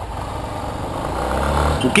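Yamaha Lander 250's single-cylinder engine running as the motorcycle rides through traffic, its low note growing louder over the second half as it pulls harder.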